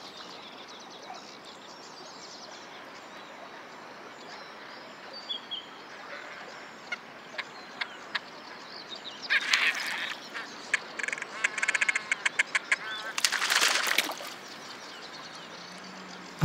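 Great crested grebes mating on a floating nest: a few faint calls over a steady background hiss, then from about nine seconds in splashing and rapid, evenly repeated calls, ending in a loud splash about two seconds before the end.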